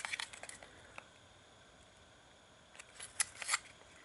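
Small cardboard bulb box handled in the fingers: faint scrapes and clicks of the card early on, then a quick cluster of sharper scrapes and clicks about three seconds in.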